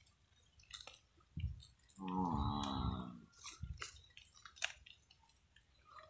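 Water buffalo grazing: scattered crisp clicks of teeth cropping and chewing dry grass, with a couple of low thumps. About two seconds in, one buffalo gives a single steady bawl lasting about a second.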